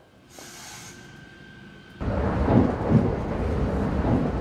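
Passenger train sound: first a faint hiss with a thin steady whine, then about halfway through a sudden change to the loud, steady rumble of the train running, as heard from inside the carriage.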